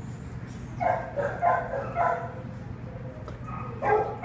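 A dog in a shelter kennel barking and yipping: a quick run of about five short barks starting about a second in, and another bark near the end.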